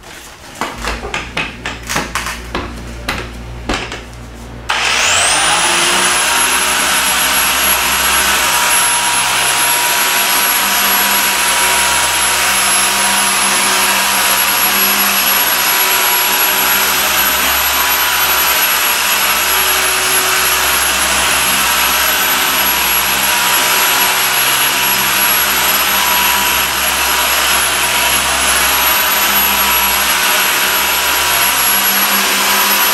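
Electric dual-action polisher with a foam pad on car paint: a few seconds of irregular rattling over a low hum, then at about five seconds the motor spins up with a quickly rising whine and runs steady and loud at speed. The polisher is compounding the paint, the first step of a two-step paint correction.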